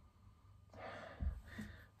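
A person sniffing the aroma of a beer from a glass held to the nose: a breathy draw of air lasting about a second, starting under a second in, with a soft low bump partway through.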